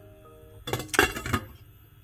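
A glass lid with a metal rim set onto a stainless steel pot, clinking and rattling for about half a second around a second in, over soft background music.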